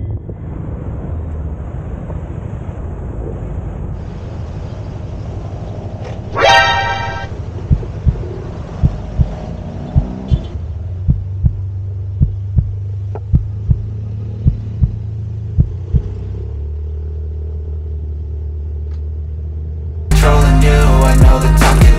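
Ride noise from a Yamaha Mio 125 scooter: its single-cylinder engine and the wind make a steady low rumble. A horn gives one short toot about six seconds in. From about seven seconds in, a run of regular sharp knocks comes roughly twice a second for several seconds.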